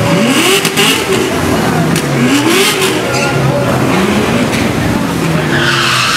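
Drag-racing cars' engines (a Mercedes-AMG and a Chevrolet Corvette V8) revving at the start line, their pitch rising in three sweeps a couple of seconds apart over a steady running sound.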